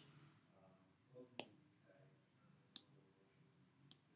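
Near silence: room tone with three faint, sharp clicks spread across it.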